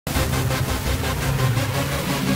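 Loud channel intro music: a dense hissing wash that pulses several times a second over a steady low drone, starting abruptly at the top.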